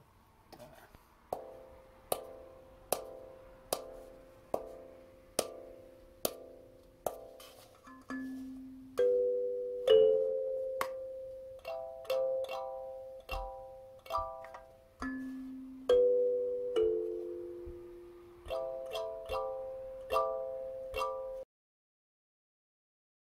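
Small kalimba (thumb piano) with metal tines played as a short melodic phrase: a steady run of single plucked notes about one every 0.8 s, then louder, longer-ringing notes and two-note chords. The sound stops suddenly near the end.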